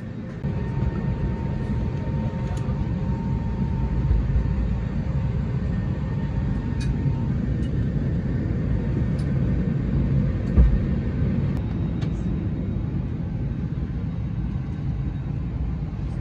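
Steady low rumble of the air-conditioning in an Airbus A320neo cabin parked at the gate. A faint steady hum sits over it for the first several seconds, with a few light clicks and a brief low thump about ten and a half seconds in.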